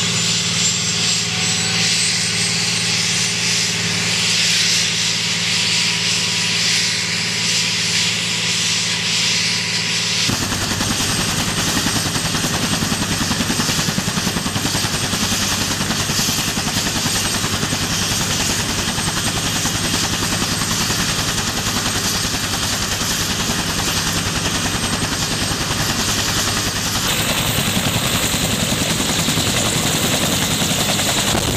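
Bell AH-1W Super Cobra attack helicopter starting up. First comes a high turbine whine that slowly rises in pitch. About ten seconds in, the sound changes suddenly to the steady, fast chop of the spinning main rotor, which runs on.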